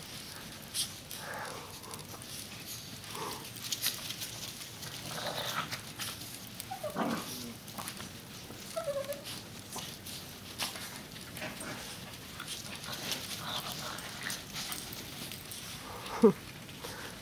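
Small dogs playing in snow, giving a few faint, short whines and yips, one falling in pitch a little before halfway through, amid soft scattered clicks and crunches.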